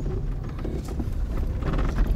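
Low, steady engine and cabin rumble inside a Daewoo Nexia on a rough mountain track, with a few faint knocks.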